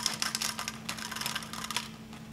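Hop pellets poured from a foil bag clicking and rattling into a small plastic cup on a digital scale, a quick irregular run of small clicks as a dose of about 15 grams is weighed out.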